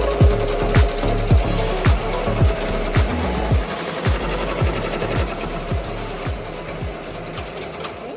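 Ricoma multi-needle embroidery machine stitching, a steady fast mechanical clatter, under background music with a regular beat that fades down near the end.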